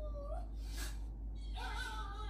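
A cartoon dog howling from a TV: a held note ends with a short upward bend just after the start, a brief hiss follows, and a new wavering howl starts about one and a half seconds in.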